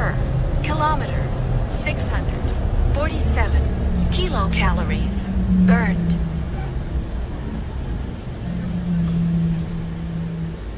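Inside a moving bus: the low rumble of the bus running, with indistinct voices talking over it for the first six seconds. A steady low hum comes in about four seconds in and again near the end.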